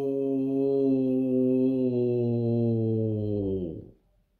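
A man's voice holding one long sung vowel on a steady low pitch, sliding down and dying away just before the end.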